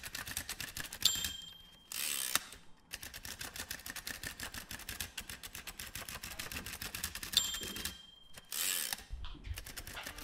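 Rapid, steady mechanical ticking, with a short high beep and, about a second after it, a brief rush of noise; the beep and the rush come twice, about six seconds apart.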